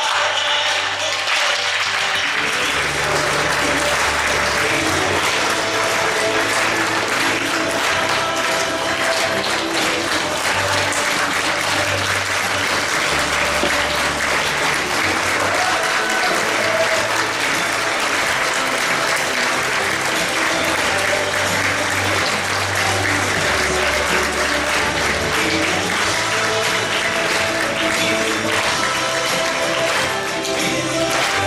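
An audience claps steadily while music with a moving bass line plays underneath.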